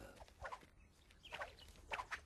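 Three faint, short animal calls over a quiet background.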